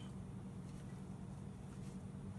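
Quiet room tone with a low steady hum and no distinct sound events.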